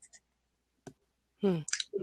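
A single short click a little under a second in, against an otherwise quiet line.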